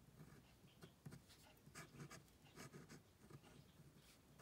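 Faint pen nib scratching on paper in short, irregular strokes as flower petals are drawn.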